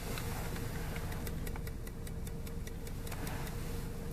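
Steady low hum inside a car, with a run of quick, faint, even ticks through the middle, several a second.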